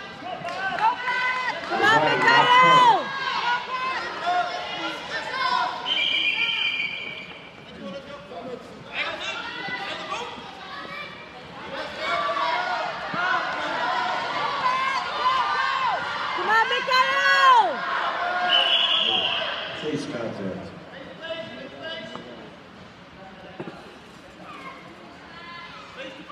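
Shouting voices over a full-contact karate bout, with thuds of kicks and punches landing. Two loud drawn-out yells stand out, a couple of seconds in and again about seventeen seconds in, and the noise dies down over the last few seconds.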